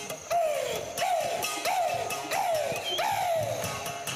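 Mouth bow, a wooden musical bow with one end held at the player's mouth, played in five repeated notes, each sliding down in pitch, about one every two-thirds of a second.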